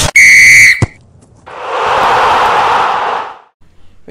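A single long, steady whistle blast, lasting under a second and ending in a click, then a crowd cheer that swells and fades over about two seconds.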